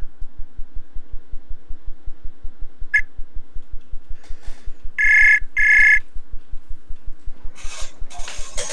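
Outgoing-call ringtone of a browser video-chat app: a short beep about three seconds in, then a double ring, two half-second bursts of a high tone, about five seconds in. A fast, regular low pulsing sounds underneath.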